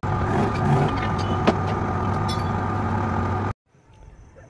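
Hydraulic press running steadily with a low hum and a thin high whine as a leaf-spring blade is worked in it, with one sharp metallic knock about a second and a half in. The sound cuts off abruptly near the end.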